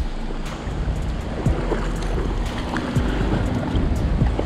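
Steady rushing of shallow creek water, with wind noise on the microphone.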